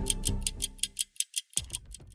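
Intro theme music with a fast clock-ticking effect, about six ticks a second. The music drops away about halfway through while the ticking carries on.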